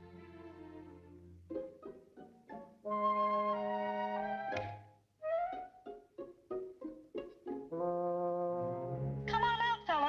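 Orchestral cartoon score: short plucked string notes and quick detached notes, between held chords from strings and woodwinds. Near the end a wavering high cry joins the music.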